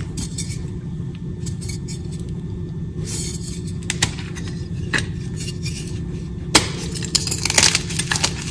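Block of gym chalk crushed between bare hands: a few sharp cracks about four, five and six and a half seconds in, then a quick run of crumbling crackles near the end as it breaks apart. A steady low hum lies under it all.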